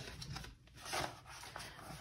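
Faint paper rustling as a cash envelope is slid out of a ring-binder pocket, in a few soft swishes with the clearest about a second in.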